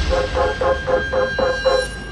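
Neurofunk drum and bass: a beatless passage in which a buzzy, alarm-like synth note pulses evenly about four times a second over a low bass drone and a thin steady high tone.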